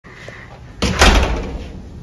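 A hotel room door's lever handle and latch clunking as the door is worked: two sharp knocks close together about a second in, then dying away.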